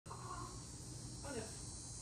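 A steady high-pitched buzzing drone with a low hum beneath it, and a faint voice about a second in.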